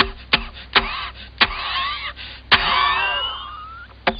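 Cartoon jalopy engine sputtering as a row of sharp pops about every half second, with the loudest pop about two and a half seconds in. High squeaky gliding sounds run over it, thickest after that big pop.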